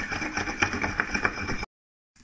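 A drinking glass swirled in circles over a curd-cheese patty in a glass bowl of fine corn grits: a steady gritty scraping with small clicks, cutting off suddenly near the end.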